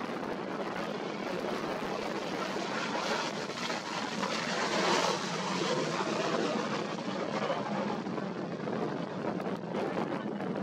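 Boeing 737-900 jet engines at go-around thrust as the airliner climbs away after an aborted landing: a steady jet roar that swells to its loudest about halfway through as it passes overhead.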